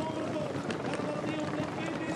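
Overlapping excited voices, a race commentator's and the shouting of a roadside crowd, urging riders toward the line in a bike race's sprint finish.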